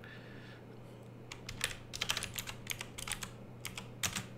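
Computer keyboard typing: a quick run of keystrokes starting about a second in, over a faint steady low hum.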